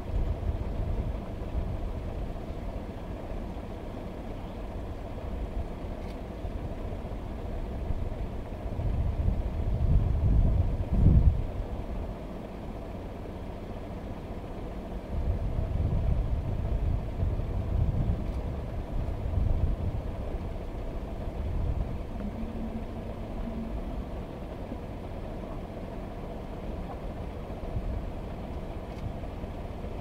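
Low, steady rumble of a vehicle engine idling, swelling louder about ten seconds in and again a few seconds later.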